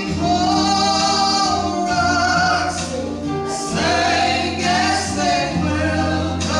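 Two women singing a Southern gospel song in harmony into microphones, over an accompaniment with a low, held bass line.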